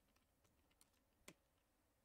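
Faint typing on a computer keyboard: a few separate keystrokes, the loudest about a second and a quarter in.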